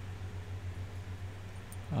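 Steady low hum with a faint hiss above it, and no other distinct event.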